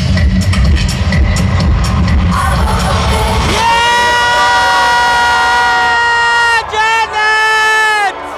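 Live concert music played loud over an arena PA: an electronic dance track with a heavy bass beat that drops out about three and a half seconds in for a long held high note. The note breaks briefly near the end and a second held note follows.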